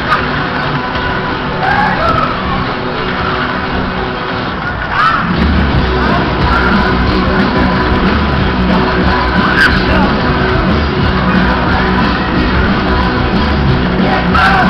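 Loud music playing over a Musik Express fairground ride's sound system while the ride runs. A heavy bass line comes in about five seconds in, and the music is louder from there on.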